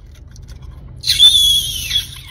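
A low steady rumble, then about halfway through a sudden loud, shrill high-pitched tone that dips slightly and holds for about a second.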